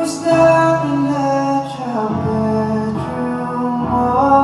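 A male voice singing a slow, tender melody into a handheld microphone, holding long wavering notes over an instrumental backing of sustained chords.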